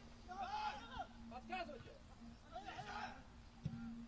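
Faint, distant shouting voices, players calling out on the pitch, in three short bursts over a steady low hum.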